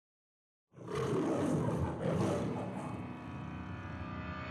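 A lion roaring, starting under a second in, swelling twice and then trailing away.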